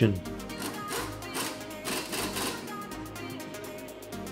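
Background electronic dance music with a steady beat.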